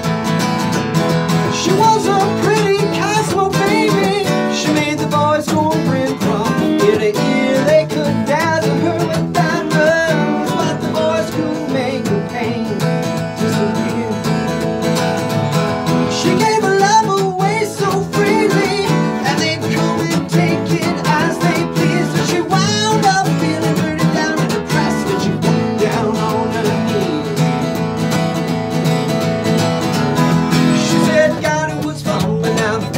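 Two acoustic guitars strumming and picking a country-style song, with a man singing over them.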